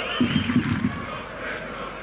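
Football stadium crowd noise from the stands, a steady roar with some whistling in the first half second.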